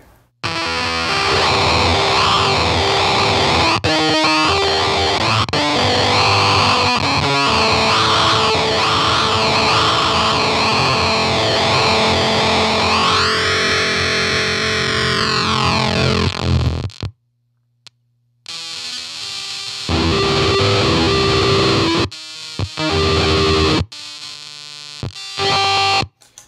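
Telecaster electric guitar played through a Mantic Flex fuzz pedal into a 1964 blackface Fender Champ amp: a dense, glitchy fuzz whose pitch wavers, with a long rising-then-falling sweep a little past halfway. The sound then cuts out completely for about a second and drops in and out afterwards, which is normal behaviour for this pedal.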